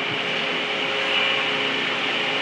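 Steady mechanical background noise: an even hiss with a faint hum underneath, as from ventilation or machinery running in a warehouse.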